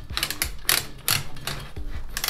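Cord reel of a Showa Seiki SPZ-250 panel heater wound by twisting the top of the unit: a run of irregular clicks, several a second, as the power cord retracts inside.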